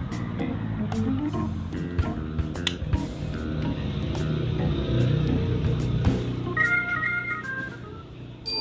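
Background music with sustained pitched notes, joined near the end by a higher run of bell-like notes, with scattered short clicks.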